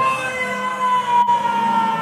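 Siren sound effect over the stage sound system: one held tone sliding slowly down in pitch, with a sharp click a little past the middle.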